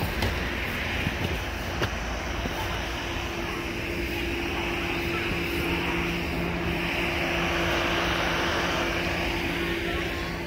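A distant engine drones steadily, with a held hum that grows louder in the second half and eases off near the end.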